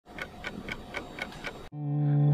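A steady ticking, about four ticks a second, then a held low musical note swells in near the end as music begins.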